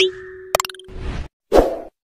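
Animation sound effects for a YouTube subscribe end card: a rising swoosh that lands in a pop with a short held tone, a quick cluster of clicks about half a second in, and another short whoosh near the end.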